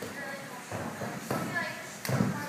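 Bare feet and hands thudding on a sprung gym floor during a running tumbling pass, a few quick thuds in the second half, under background voices.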